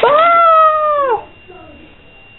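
A loud, long high-pitched cry lasting about a second, holding its pitch and then dropping at the end, right after a sharp click.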